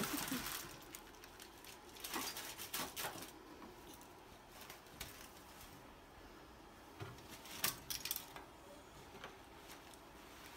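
Handling noise as a foil-wrapped brisket is lifted off a metal sheet pan and bundled in a cloth towel: crinkling foil and rustling fabric with a few light clicks and knocks. It comes in short bursts, at the start, two to three seconds in, and again about seven to eight seconds in.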